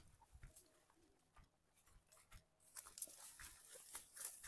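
Faint rustling and crunching of dry tall grass being brushed and stepped through on foot, in scattered short bursts that come thicker in the second half.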